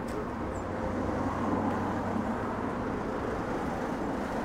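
Bus approaching on the road: engine hum and tyre noise grow louder over the first second and a half, then hold steady.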